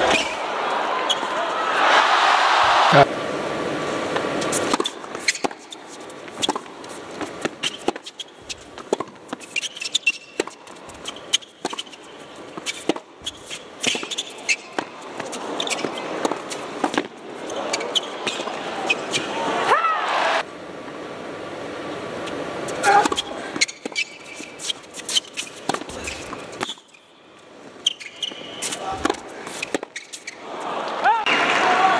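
Tennis rallies on an indoor hard court: rackets striking the ball again and again, in sharp separate hits, between points. Loud crowd noise fills the first few seconds.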